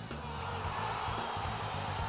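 Stadium crowd cheering a goal, a roar that swells shortly after the start, over background music with a steady low bass.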